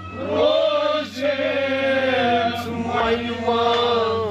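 A man singing a Kashmiri Sufiyana song, drawing out long wavering notes with short breaks about a second in and again near three seconds. A steady low drone from the accompaniment runs beneath the voice.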